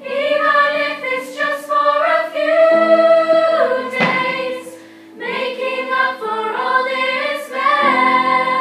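A girls' chamber choir singing in several parts, holding long notes, with a short pause for breath about five seconds in.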